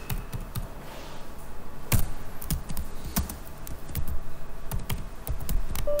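Typing on a computer keyboard: irregular key clicks, with one louder keystroke about two seconds in.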